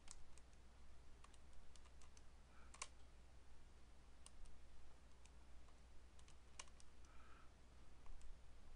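Faint, irregular clicks of calculator keys being pressed one after another as a long expression is keyed in, with a low steady hum beneath.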